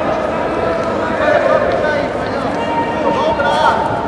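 Many overlapping voices of spectators around the mats, a steady chatter in which no single speaker stands out.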